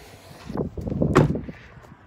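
A truck's rear passenger door being swung shut: a rustling rush ending in a sharp latch click about a second in.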